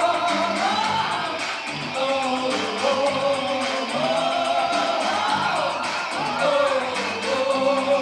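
Synth-pop band playing live: a repeating synthesizer bass pulse under held synth tones and a sung vocal line.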